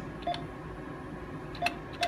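Two short beeps from a Japan Post Bank ATM's touchscreen keypad as two digits are pressed: one about a third of a second in, the other near the end.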